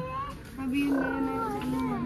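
A child's voice making drawn-out, wavering calls: a short rising call at the start, then one long held call from about half a second in that falls in pitch near the end.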